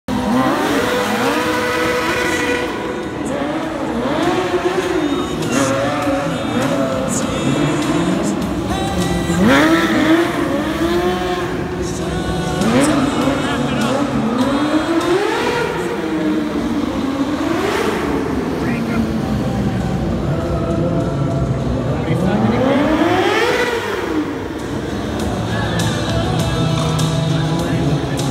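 Sport motorcycle engines revving hard and falling back again and again during stunt riding, the pitch climbing and dropping every second or two.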